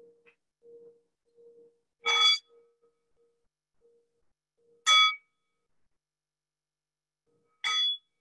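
A singing bowl struck three times with a wooden mallet, about every two and a half to three seconds, each strike a bright metallic ring cut off after a fraction of a second. A faint wavering hum from the bowl's rim being rubbed fades out in the first two seconds.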